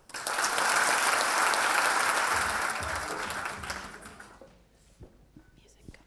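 Audience applause that dies away about four seconds in, leaving a quiet hall with a few faint knocks.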